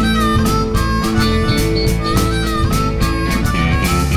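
Live blues band playing: a harmonica plays bending, wailing phrases between sung lines, over electric guitar and a steady drum beat.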